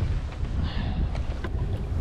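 Wind buffeting the microphone as a steady low rumble, over the wash of choppy water around a small boat.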